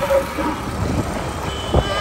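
Road and traffic noise heard from a moving vehicle: a steady mixed rumble, with a faint steady high tone entering near the end.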